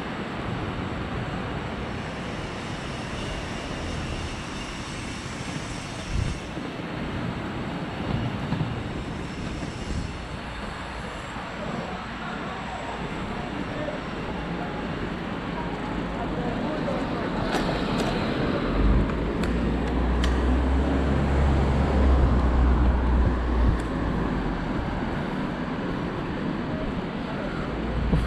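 Steady wind noise on the microphone of a camera riding on a moving bicycle, with a deeper buffeting rumble about two-thirds of the way through.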